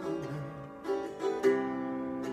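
Acoustic-electric guitar played solo, a few picked notes ringing on, with new notes struck about a second in and again around one and a half seconds.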